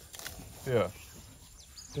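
A quiet open-air lull with one brief, falling vocal sound from a person about three-quarters of a second in. A faint steady high tone runs through the middle.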